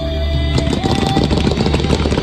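Show music with sustained tones, joined about half a second in by fast, dense crackling of fireworks.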